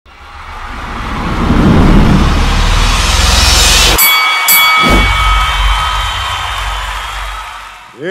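Cinematic logo-intro sound effects: a rising whoosh over a deep rumble builds for about four seconds, breaks off into a sudden hit with high ringing tones, and a deep boom follows about a second later and fades away.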